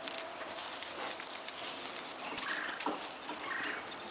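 Thoroughbred mare walking on grass under a rider: a few faint, soft hoof falls and light knocks over a steady background hiss.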